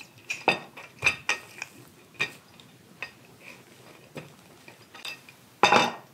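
Kitchen utensils knocking and clinking against a table and a dish: scattered sharp clicks over several seconds, with a louder clatter near the end.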